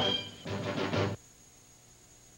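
TV show closing theme music ending on a final chord that cuts off abruptly a little over a second in, followed by faint hiss.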